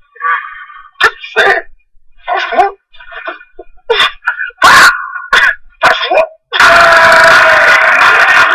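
Short wordless vocal sounds from a person, coming in bursts with pauses between them. About two-thirds of the way in, a loud, continuous noisy sound starts and carries on past the end.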